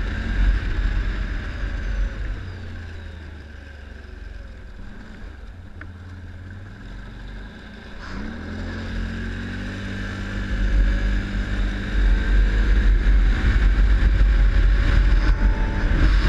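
ATV engine running under way: it eases off for several seconds, then revs up and accelerates about halfway through, getting louder, with a low wind rumble on the microphone.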